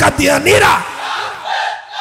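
A crowd of voices shouting together, loudest in the first second, then dying down into a softer hubbub. Just before the shout, a man's voice is heard shouting through the PA.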